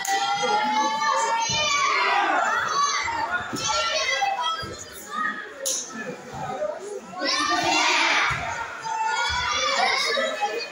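Children's voices shouting and calling out over one another in a large echoing hall, mixed with some adult speech, loudest near the end. Occasional dull thuds are heard among the voices.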